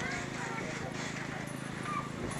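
Faint background voices over a steady low hum with rapid faint pulsing.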